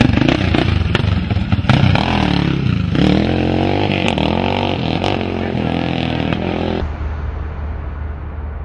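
Motorcycle engine revving, its pitch rising and falling with the throttle and gear changes, then dropping away near the end as the bike rides off.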